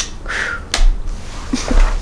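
A few sharp clicks with rustling in between, and music beginning near the end.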